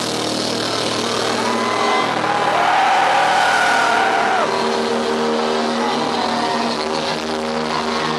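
Live rock band playing loud and close, an instrumental stretch with no singing: electric guitar holding long notes over sustained bass and chords. About two seconds in, a lead line bends up in pitch, is held, and slides back down a little after the middle.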